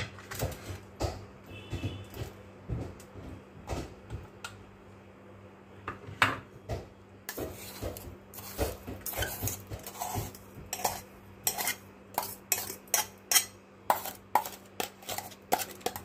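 Irregular metal clinks, taps and scraping as coarsely ground churma is scraped and knocked out of a steel mixer-grinder jar onto a ceramic plate. The taps come sparsely at first and grow quicker and more frequent in the second half.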